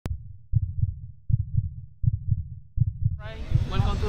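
A deep bass thump repeating about every three-quarters of a second, five times, like a heartbeat sound effect over a black intro screen. About three seconds in, a voice begins over it.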